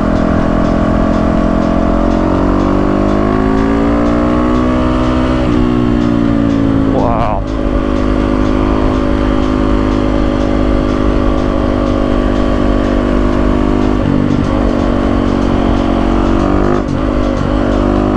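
Yamaha WR450F's single-cylinder four-stroke engine running at road speed. Its pitch climbs over the first few seconds, breaks briefly about seven seconds in, then holds steady, over a rush of riding noise.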